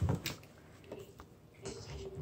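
Faint soft squishing and small clicks of fingers working shaving cream inside a cardboard box, in an otherwise quiet room.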